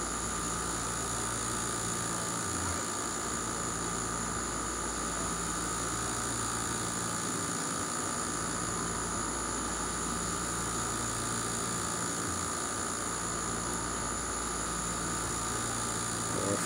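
Steady mechanical hum and hiss with a few held tones, unchanging in level.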